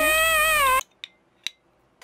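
Edited-in sound effect: a high, whining, meow-like cry lasting about a second, its pitch held steady and sinking slightly before it cuts off.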